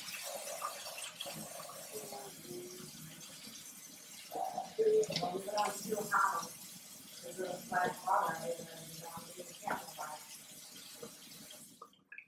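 Kitchen faucet running into a stainless steel sink while a silicone ice cube tray is rinsed under the stream, the water hiss slowly fading and stopping as the tap is shut off at the end. A child coughs a couple of times partway through.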